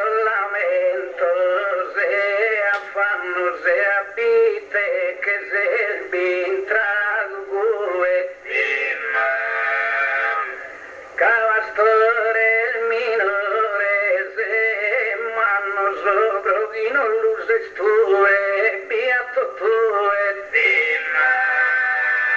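A man's voice singing improvised verse in the Sardinian gara poetica chant, slow drawn-out lines with a wavering, bending pitch, into a microphone. There is a brief dip in the singing about ten seconds in.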